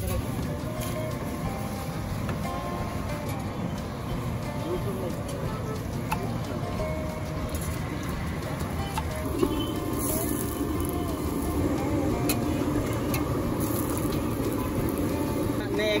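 Busy street-stall ambience: background voices and traffic, with a few light metal clicks of a spatula and tongs on an iron tawa, under background music.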